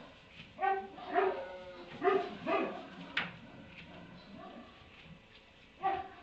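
An animal gives five short, pitched calls, four close together in the first three seconds and one more near the end, with a single sharp click between them.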